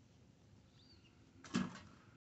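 Quiet outdoor background with a faint short bird chirp a little under a second in, then a brief loud burst of noise about a second and a half in that dies away quickly.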